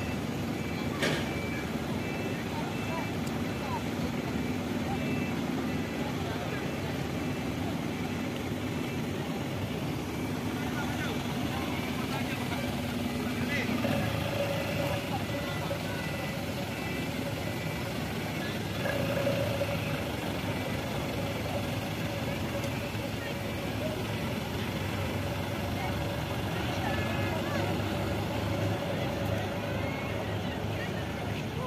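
Engines of army troop trucks running steadily. About halfway through, the engine note shifts to a different pitch as another vehicle's engine takes over or a truck pulls close.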